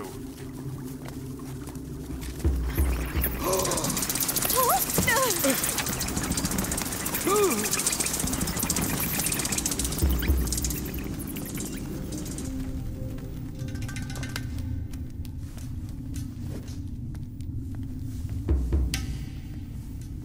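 Animated-series soundtrack: background music under a strong rushing noise through the first half, with deep booms about three times and a few short gasps and throat-clearing.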